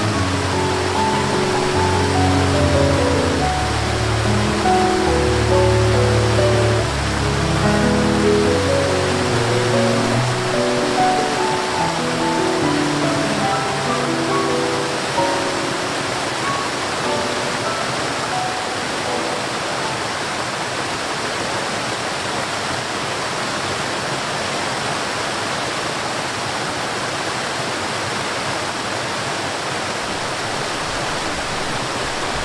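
Steady rushing water of a waterfall, with slow music of long held notes over it that fades out about halfway through, leaving the water alone.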